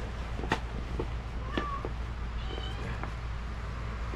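A cat meowing briefly twice, once about a second and a half in and again a second later, over light clicks and rustling from a vinyl sticker sheet being handled and rubbed down onto the board.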